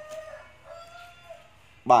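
A rooster crowing faintly, one drawn-out crow of about a second and a half that rises slightly in pitch toward its end.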